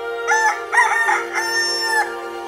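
Rooster crowing once: a cock-a-doodle-doo that starts about a quarter second in with short broken notes and ends in a long held note, over soft background music.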